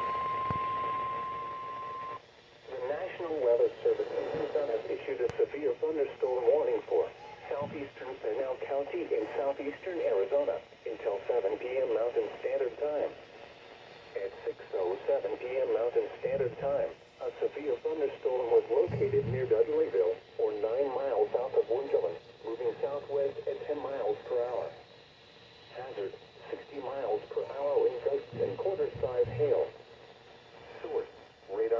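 A Midland NOAA weather radio's speaker sounds the steady single-pitch 1050 Hz warning alert tone, which cuts off about two seconds in. An automated voice then reads out a severe thunderstorm warning through the small, tinny speaker.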